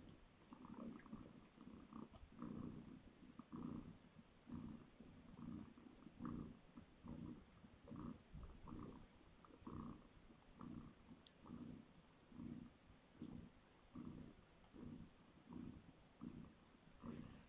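Calico mother cat purring softly in the pause between deliveries, in an even rhythm of about one pulse a second as she breathes in and out.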